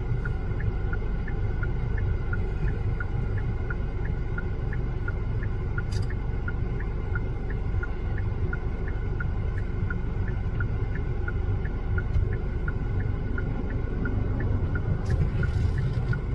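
Low, steady rumble inside a car cabin, with a car's indicator ticking regularly about three times a second.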